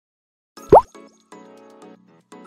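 Logo intro sting: after a brief silence, a single short bloop sweeping sharply up in pitch, followed by soft, quiet musical notes.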